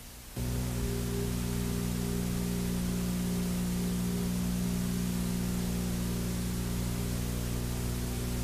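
Steady electrical hum with a row of overtones over tape hiss, from an old videotape soundtrack, switching on suddenly just under half a second in and holding unchanged.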